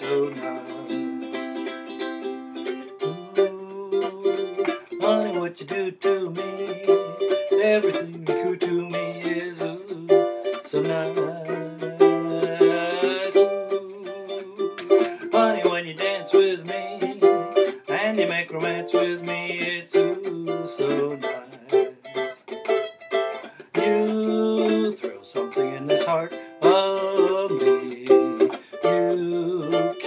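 Ukulele strummed in a brisk, steady rhythm, playing chords through an instrumental break of a song.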